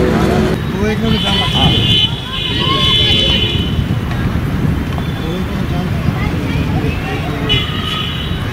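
Live sound of an outdoor field hockey match: steady background noise with scattered distant voices, and a high steady tone from about a second in for two seconds or so that comes back near the end.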